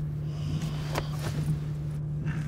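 Low, steady hum of road and tyre noise heard from inside a moving vehicle's cabin, with a faint short click about a second in.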